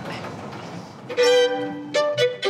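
Solo violin begins to play about a second in, bowing a held note and moving to a new note at the end. Before it comes a soft rushing noise.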